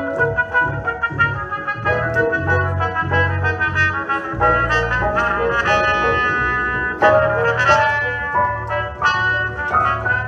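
A trumpet playing a melody over keyboard accompaniment with a steady bass line, instrumental church music with no singing.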